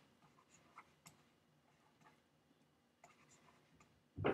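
Near silence, with faint, scattered light ticks and scratches of a stylus writing by hand on a tablet.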